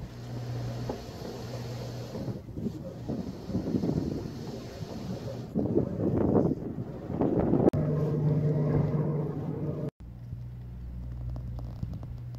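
Military vehicle engine running with a steady low drone, then uneven rumbling and rattling with louder surges partway through, and wind buffeting the microphone. It cuts off abruptly near the end to a steadier low hum.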